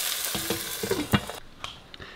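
Chicken breasts sizzling as they fry in a pan, with a few light knocks of the pan's glass lid. The sizzle cuts off about a second and a half in.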